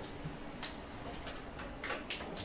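A few faint, irregular light ticks and scuffs, roughly one every half second, from a person moving and handling things at a classroom board.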